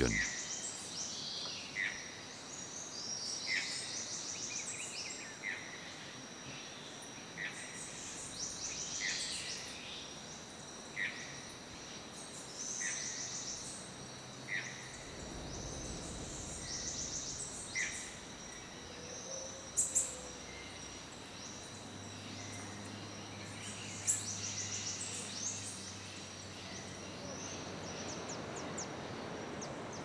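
Tropical forest ambience: a steady high insect trilling, with a bird repeating a short call note every second or two and scattered higher chirps.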